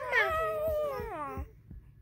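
A baby's long drawn-out 'aah' vocalization, held at one pitch and then sliding down before it stops about one and a half seconds in.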